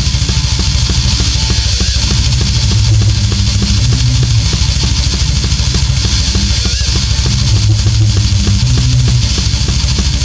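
Instrumental progressive death metal: distorted electric guitars over a drum machine, with a fast, steady kick-drum pattern throughout and no vocals.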